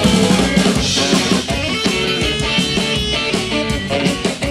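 Live rock band playing an instrumental passage without vocals: electric guitars, a drum kit and a saxophone.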